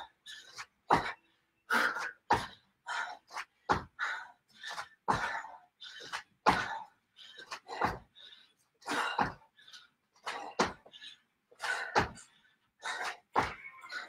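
Short, hard exertion breaths and the soft thuds of feet landing, in quick bursts about once or twice a second, from a person doing squat jumps on a floor mat.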